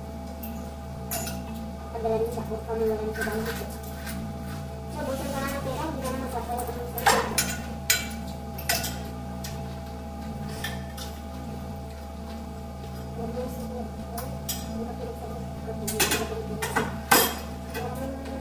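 Spoons and forks clinking against ceramic plates and bowls as people eat, with a few sharper clinks about seven to nine seconds in and again near the end. Soft background music plays throughout.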